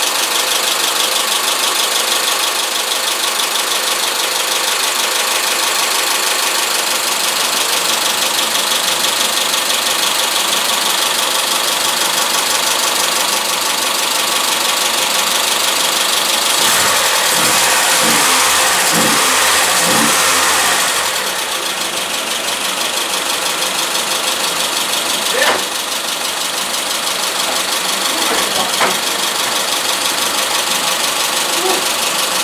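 Newly installed replacement engine of a Mitsubishi Chariot running steadily at idle. In the middle it grows louder for about four seconds, rising and falling, then settles back. Two short sharp clicks come near the end.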